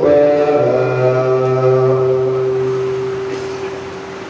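An imam's chanted voice holding one long drawn-out note that slowly fades away, the stretched end of a phrase of prayer recitation.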